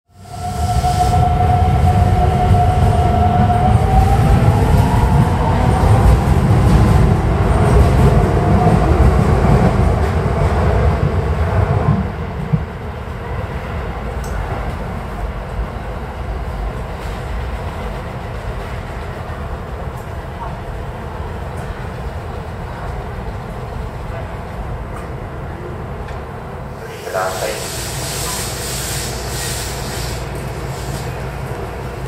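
Keikyu electric train accelerating: a motor whine rising in pitch over a heavy low rumble that eases off about twelve seconds in, leaving a steadier, quieter rumble. Near the end there is a short, sharper burst with a bright hiss.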